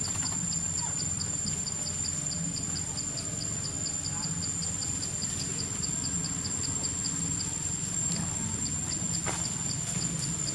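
Insects chirping in the forest: a steady high-pitched drone with a rapid, regular chirp about four or five times a second, over a low rumble.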